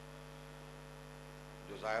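Low, steady electrical mains hum in the microphone and sound system, with a man's voice starting near the end.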